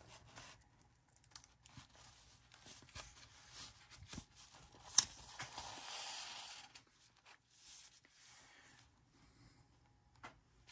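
Faint handling of paper and card as a journal's paper signature is shifted and sewn into its cover: scattered light taps and rustles, one sharp click about halfway through, then a second or two of paper sliding and rustling.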